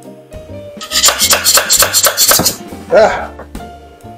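A plastic scraper rasping and clicking in quick strokes as it pries a white resin print off a perforated metal resin-printer build plate; the print was built straight onto the plate with no raft, so it takes force. The scraping lasts about a second and a half, starting about a second in, over background music.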